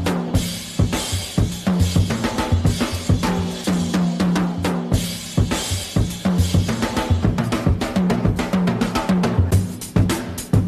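Swing music led by a drum kit, with bass drum, snare and cymbal strokes keeping a steady beat over a moving bass line.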